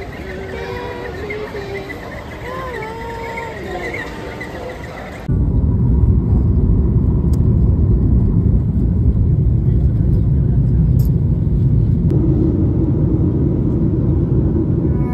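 A wordless, wavering melodic voice over background noise, then an abrupt cut about five seconds in to the loud, steady low rumble of a moving vehicle's cabin.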